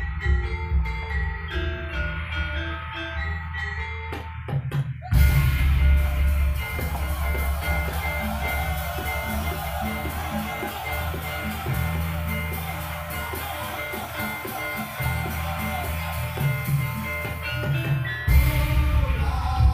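Javanese gamelan-style ensemble music for a jaran kepang dance: metallophone notes over drums for the first few seconds, then about five seconds in the full ensemble comes in louder with a fast, steady beat of drums and percussion.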